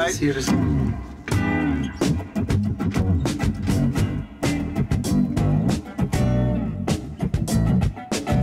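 Guitar playing a rhythmic groove of plucked notes and strummed chords.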